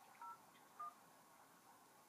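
Smartphone dialer keypad playing faint touch-tone beeps as a phone number is keyed in: two short dual-tone beeps, one about a quarter second in and one just under a second in.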